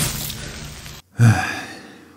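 Low rumbling background noise fades and cuts off about a second in, then a man sighs: one long breath out that starts loud and fades away.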